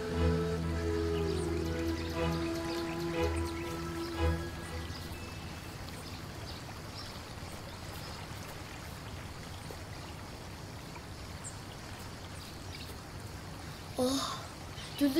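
Background music of long held notes fades out about four seconds in, leaving the steady rush of a shallow stream running over stones.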